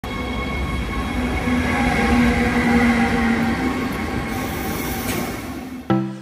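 FlixTrain locomotive-hauled passenger train pulling into a station platform, its wheels running on the rails with thin steady squealing tones. The sound swells, then fades as the train slows.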